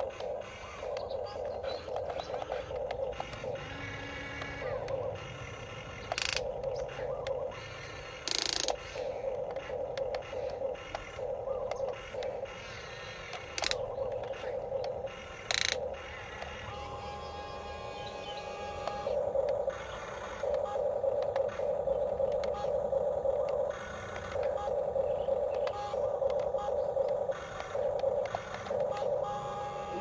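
Huina remote-control excavator's small electric motors and gearboxes whining in short bursts of a second or so, starting and stopping as the boom, bucket and turntable move, with a few sharp clicks.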